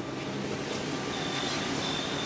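1954 Chevy 210's engine idling steadily on its freshly rebuilt carburetor.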